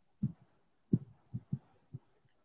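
Five soft, low thumps at irregular intervals: handling noise as the wired earphone microphone or the phone is knocked and rubbed while she moves.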